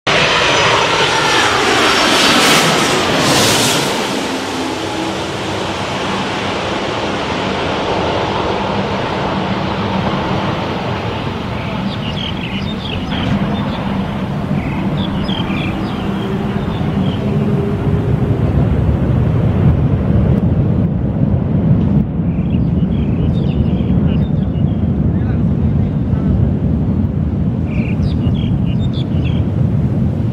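Twin-engine jet airliner passing low overhead on landing approach, its engine whine falling in pitch over the first few seconds. Then a twin-engine widebody jet at takeoff power on the runway: a steady jet roar whose low rumble grows stronger in the second half.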